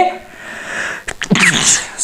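A man sneezes: a soft breath in, then one sharp sneeze about one and a half seconds in.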